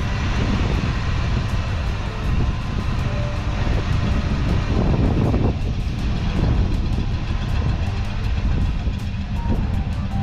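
A 305 cubic-inch small-block V8 in a 1986 Chevrolet C10 pickup, running at idle, with music faintly underneath.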